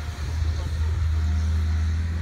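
Apache AS1020 self-propelled sprayer's engine running as the machine drives across the field: a steady low drone, with a slightly higher hum joining about halfway through.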